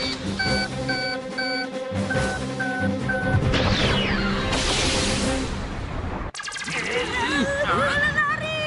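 Cartoon sound effects of a gadget missile launch: six short electronic beeps in two sets of three, then a falling whistle and a rushing whoosh as the missiles lift off, which cuts off suddenly about six seconds in. Background music plays underneath, and a voice cries out near the end.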